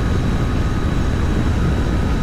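A 2019 Yamaha Tracer 900 GT motorcycle cruising at highway speed: a steady, heavy rush of wind and road noise, with the engine running underneath.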